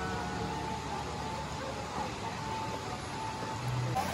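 Steady rush of the Ginzan River's water flowing through the hot-spring town.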